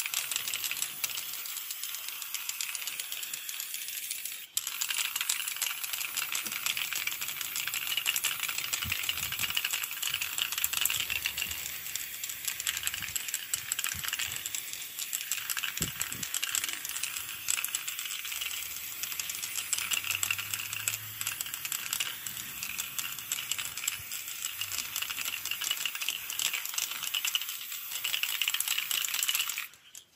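Aerosol spray paint cans spraying with a steady hiss, mixed with the rattle of the cans' mixing balls. The sound breaks briefly about four and a half seconds in and cuts off suddenly at the very end.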